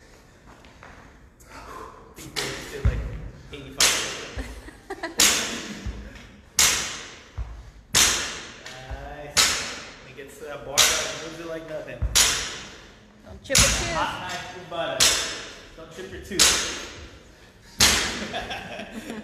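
Loaded barbell touching down on a rubber gym floor at each rep of barbell high pulls: a sharp thud with a clank about every second and a half, about a dozen in all, each echoing in the large room. A man's voice comes briefly between some reps.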